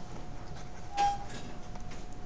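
Quiet steady room hiss with a faint hum, and one short, faint blip about a second in.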